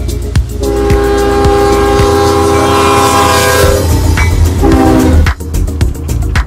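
Diesel locomotive's air horn sounding a multi-note chord: one long blast, then a short one about a second later.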